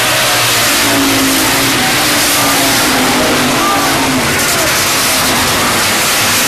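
Several hobby stock race cars running on a dirt oval, their engines a loud, continuous din with a wavering engine note as the pack passes.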